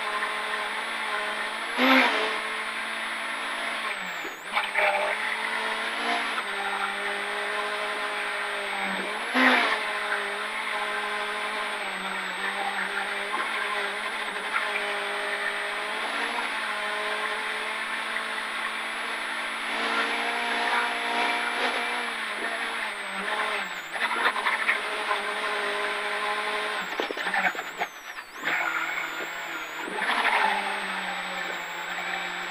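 VW Golf Mk2 Group H rally car's four-cylinder engine pulling hard at high revs inside the cabin on a gravel stage. The pitch holds fairly steady, with a few short drops where the throttle is lifted and a shift down from fifth to fourth near the end. Two loud sharp knocks come through the car, one about two seconds in and another near ten seconds.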